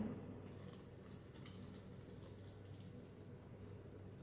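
Faint chewing of a bitten fried chicken wing: soft, wet mouth clicks every half second or so, over a low steady hum.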